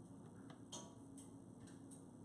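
Faint, scattered light clicks and taps, about five in two seconds, from a bottle of calligraphy ink and an ink dish being handled, over quiet room tone.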